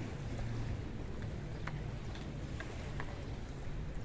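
Small waves washing over a pebble and rock shoreline, heard as a steady outdoor wash with a low hum under it and a few light clicks.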